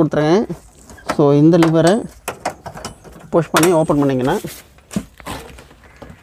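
A man talking, with sharp clicks and knocks from the seat's metal clamp latches being released and the seat lifted up to open the engine bay underneath.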